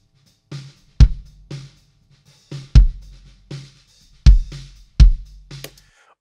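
Recorded kick drum track played back through a Neve 1073-style preamp with its gain raised and one EQ cut at 360 Hz. It gives four deep kick hits, with lighter snare hits bleeding in between at about one a second. The cut takes out muddy lower mids, so the kick sounds punchier on the low end and its attack stands out more.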